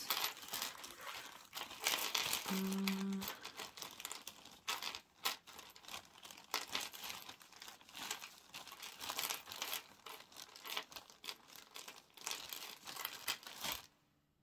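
Hands rummaging through a jumble of loose beads and jewellery parts: a continuous stream of small, irregular clicks and rustles of glass and plastic pieces.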